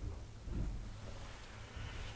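Quiet room tone with a steady low hum, and a brief faint sound about half a second in as a man sips water from a mug.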